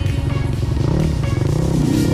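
Background music over a two-stroke enduro motorcycle engine revving up and down, with several short rises in pitch.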